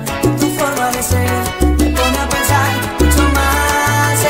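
Salsa music from a DJ mix: a bass line moving between held low notes under piano or horn lines, with steady percussion strikes.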